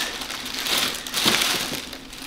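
Grey plastic mailer bag crinkling and rustling in irregular bursts as it is pulled open by hand and a cardboard boot box is worked out of it.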